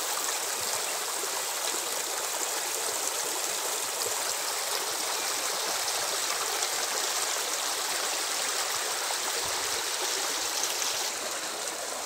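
Shallow rocky stream running over stones in small riffles: a steady rush of water.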